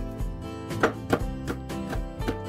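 Background music, with a few sharp knocks of a chef's knife cutting hot chili peppers on a plastic cutting board; the loudest two come about a second in.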